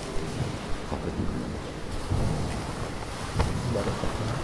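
Low, irregular rumbling thumps and a few soft knocks as a Torah scroll is covered and a prayer book is handled on the wooden reading table, picked up close to the microphone.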